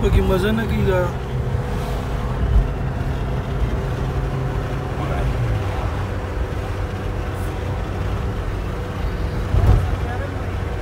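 Steady engine and road noise from inside a moving car's cabin, a low hum that holds even throughout.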